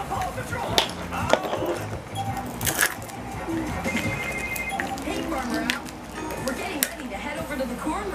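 Hands peeling and crinkling the printed foil wrapper off a plastic Mini Brands capsule ball, with several sharp plastic clicks and a brief rustle about three seconds in. Speech and music play in the background throughout.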